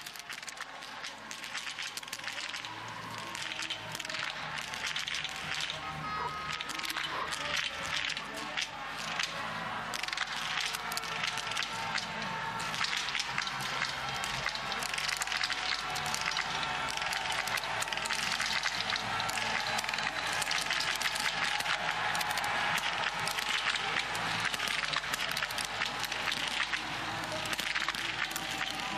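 Biathlon shooting-range ambience: small-bore .22 rifle shots cracking at irregular intervals over crowd voices and music, the whole mix growing gradually louder.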